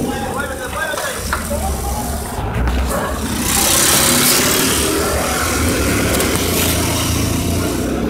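Street sound recorded on a phone at night: car engines running with voices. A loud rushing noise comes in about three and a half seconds in and carries on.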